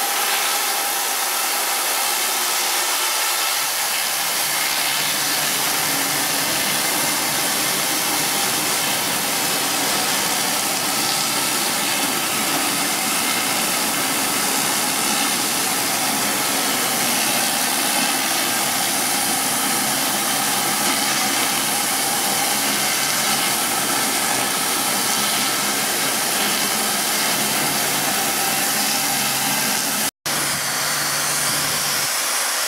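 Rotary hard-surface cleaner with vacuum recovery running over wet brick pavers: a steady, loud hiss of spinning water jets and suction, with a faint whine underneath.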